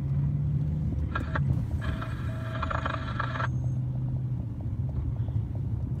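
Car being driven, its engine and road noise a steady low drone heard from inside the cabin.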